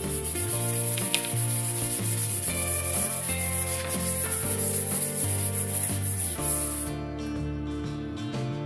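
Hand sanding of a wooden katana blade: sandpaper rubbed back and forth along the wood, a steady hiss that stops about a second before the end.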